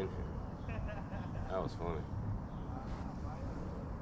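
A few faint, indistinct spoken words about one and a half seconds in, over a steady low outdoor rumble.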